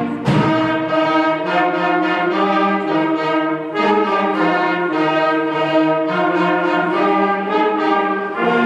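Student concert band of brass and woodwinds playing held chords that change about every second, at a steady full level.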